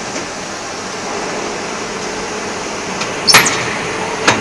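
Hydraulic injection moulding machine running with a steady hum, then a sharp metallic clack with a brief ring about three seconds in as the plastic nut mould opens.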